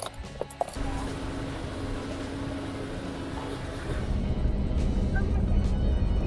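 A few quick clicks as a ute's fuel filler cap is twisted open, then steady low noise. From about four seconds in, a louder low road-and-engine rumble is heard from inside the moving vehicle's cabin.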